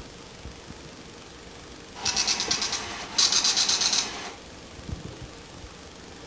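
The 16-column ink-ribbon dot-matrix printer in a Radio Shack TRS-80 Pocket Computer printer and cassette interface prints out a program listing. It makes two short, fast buzzing bursts, each under a second, a moment apart, starting about two seconds in.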